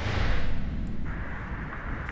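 Newscast graphic transition sound effect: a deep boom with a whooshing hiss that swells right at the start and fades away over about two seconds.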